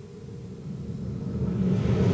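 A low rumbling whoosh swelling steadily louder, the TV soundtrack's transition effect as the scene leaves a flashback.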